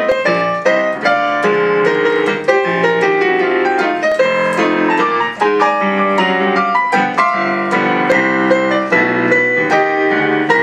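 Digital piano played solo in a quick, jazzy instrumental break, with dense chords under right-hand runs of several notes a second.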